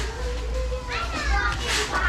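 Children talking and calling out close by, with one high-pitched falling call about a second in.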